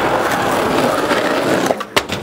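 Skateboard wheels rolling over rough asphalt, a steady gritty rumble that stops abruptly near the end, followed by a sharp clack.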